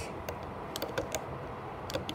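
A few irregular light clicks and taps of a plastic hook against the plastic pegs of a Rainbow Loom as rubber bands are hooked and looped.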